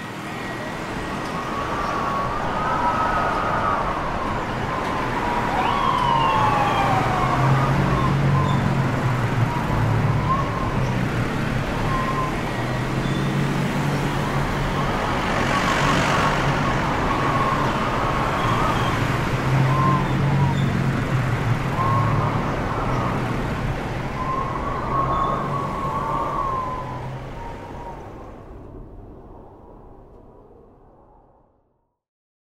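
City street ambience: a steady rumble of traffic with distant sirens wailing up and down, at times two crossing each other. The sound fades in at the start and fades out over the last few seconds.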